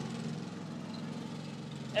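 Riding lawn mower engine running with a steady low hum.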